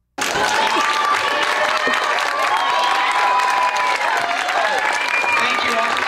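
Audience applause with many voices chattering and calling over it, cutting in abruptly just after the start.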